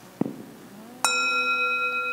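A bell struck once about a second in, ringing on in a clear sustained tone with several high overtones. A brief knock sounds shortly before it.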